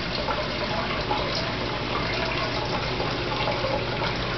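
Steady rush of running water in an aquarium system, over a faint low steady hum.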